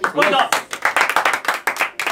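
A small group of people clapping their hands, with laughter and a short voiced sound near the start.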